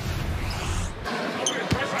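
Arena crowd noise after a made basket, then a single sharp basketball bounce on the hardwood court near the end.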